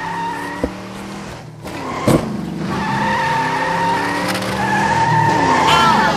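Car sound effects: an engine running while tyres squeal in two long stretches. There is a short knock about half a second in and a louder one about two seconds in.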